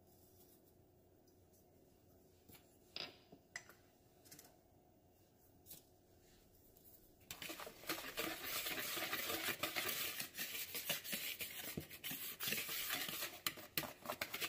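A few light clicks in the first half, then, from about seven seconds in, a wire whisk mixing dry flour and cornmeal in a plastic mixing bowl: a fast, continuous scratchy swishing of rapid strokes.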